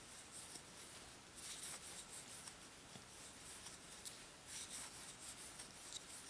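Faint rustle of yarn drawn over a wooden crochet hook and through the fingers while making crochet stitches, in a few soft brushes with a small click.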